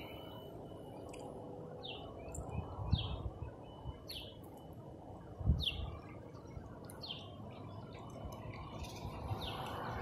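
A bird repeating short, falling chirps about once a second over steady background noise, with a faint steady high tone and a couple of low thumps about three and five and a half seconds in.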